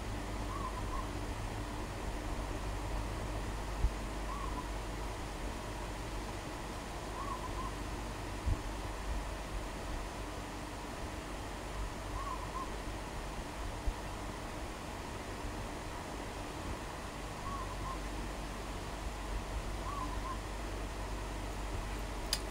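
Steady low room hum with a few faint clicks. A faint, short hoot-like call recurs every few seconds.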